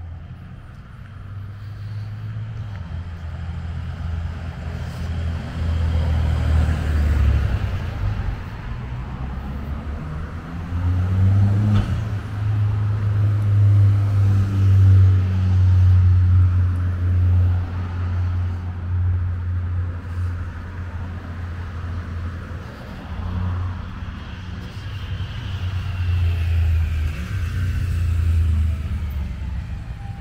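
Road traffic: cars passing on a road, heard as a heavy, uneven low rumble under a broad hiss, loudest around the middle.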